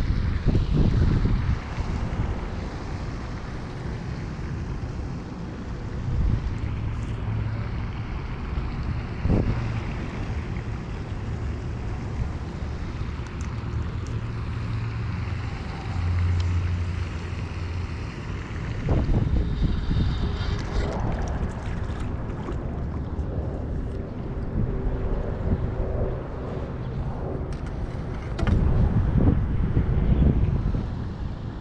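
Wind buffeting the microphone as a rumble that swells in gusts near the start and again near the end, with scattered faint clicks and rustles of handling.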